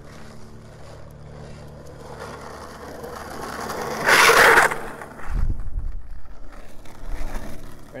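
Skateboard on smooth asphalt: urethane wheels rolling with a rising rumble, then a harsh scrape of the board lasting under a second just after four seconds in. About a second later the board lands with a low thud, and the wheels roll on.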